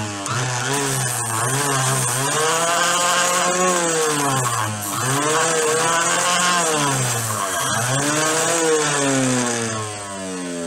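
Homemade disc sander, driven by the motor from an old electric meat grinder, running while a block of wood is pressed against the disc. Its hum drops in pitch each time the wood bears on the disc and rises again as the pressure eases, several times over.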